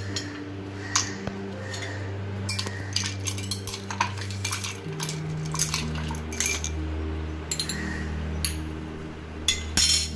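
Ice cubes and a spoon clinking against a drinking glass as ice, mint and a lemon wedge are put in, a dozen or so sharp, separate clinks spread through. Under them runs soft sustained background music whose low notes shift about halfway through.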